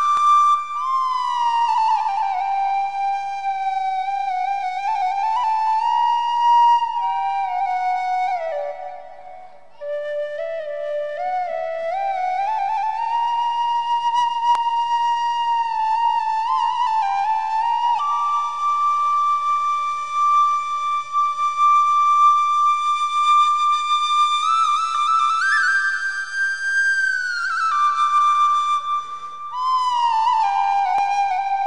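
Unaccompanied small flute playing a slow melody of held notes joined by slides, with a short pause for breath about nine seconds in and a wavering held note near the end.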